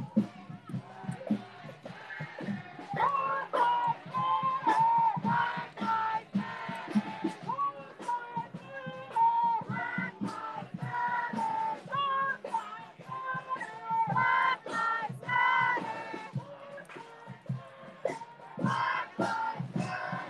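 A protest crowd chanting and singing together in rhythmic phrases, with sharp claps or beats between them.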